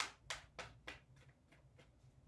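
A deck of tarot cards shuffled in the hands, a short soft slap of cards about three times a second, the first the loudest and the rest fading.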